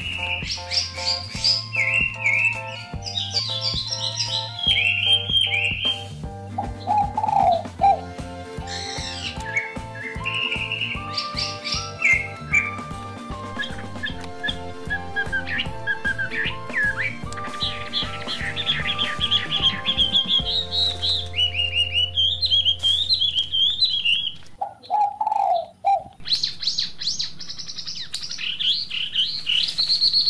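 Small birds chirping in quick high calls over background music with a steady beat and held notes. The music drops out about two-thirds through, leaving the chirping on its own.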